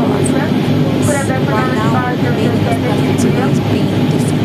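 Turboprop airliner's engine and propeller running with a steady drone, heard from inside the cabin, under a person's voice talking.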